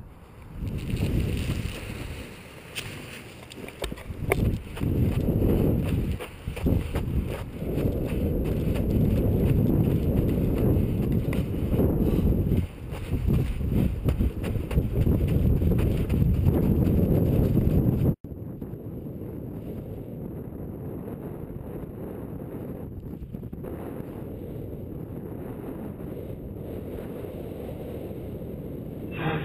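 Wind buffeting an action camera's microphone in paraglider flight, a deep rumble that gusts up and down. About two-thirds of the way in it cuts off abruptly and gives way to a steadier, quieter rush of wind.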